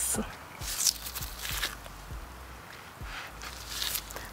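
Knife slicing raw yellowtail on a cutting board, with a few faint taps of the blade on the board and soft rustling.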